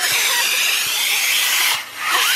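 A vacuum cleaner running steadily, with a brief drop in level near the end.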